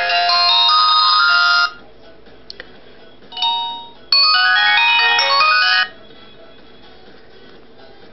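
A WG9 mobile phone's loudspeaker playing its power-on jingle: a quick run of bright electronic chime notes that stops about a second and a half in. A short tone follows around three and a half seconds, then a second chiming jingle from about four to six seconds, as the phone finishes starting up.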